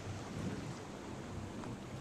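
Steady wind noise on the microphone with a low, even hum underneath from the boat under way.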